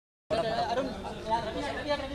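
An edit cut with a moment of dead silence, then indistinct chatter of people's voices.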